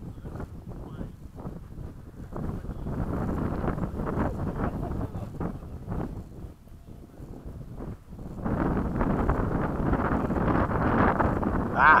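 Wind buffeting the microphone: an uneven rushing that dips for a moment, then grows louder and stays up from about eight and a half seconds in.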